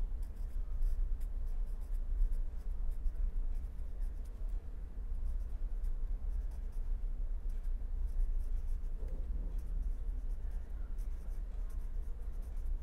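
Marker pen writing on paper: faint, irregular scratching strokes as words are written by hand, over a steady low hum.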